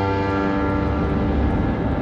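Trailer score: a sustained piano chord fades away over about a second and a half, while a dense, low rumbling noise swells beneath it and takes over.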